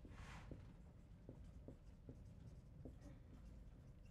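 Faint dry-erase marker writing on a whiteboard: a longer scratchy stroke at the start, then about four short squeaks of the marker tip.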